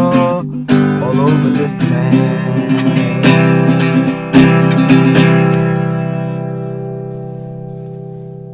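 Acoustic guitar strummed through the closing bars of a folk song. The last chord is struck a little after five seconds in and rings out, fading away.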